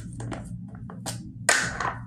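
Long fingernails clicking and tapping against a jar of cleansing balm as it is handled, a series of small knocks, then a louder short rasp about one and a half seconds in, over a steady low hum.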